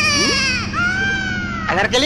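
A high-pitched, drawn-out crying wail like a baby's cry, in two long held notes, the second sliding slowly down.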